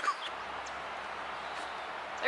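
A laugh trails off at the very start, then steady, even rushing background noise with a faint low hum underneath.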